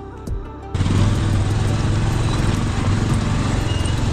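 Soft background music at first, then about a second in a sudden switch to a loud, steady motorcycle engine running along with wind noise on the microphone.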